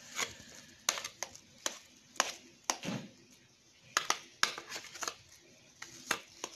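A spoon scraping blended, soaked bulgur wheat out of a plastic blender jar into an enamel bowl: about ten short, irregular clicks and scrapes of the spoon against the jar and bowl.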